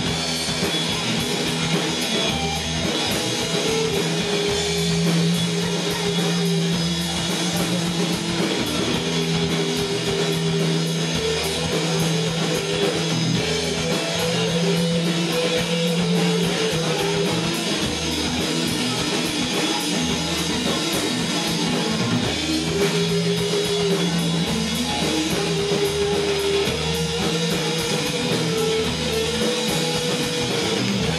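Live rock band playing: two electric guitars, electric bass and drum kit, with a guitar line of long held notes moving above the chords.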